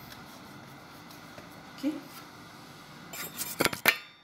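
Faint kitchen room tone, then near the end a loud burst of rubbing and knocking as the filming phone is picked up and handled.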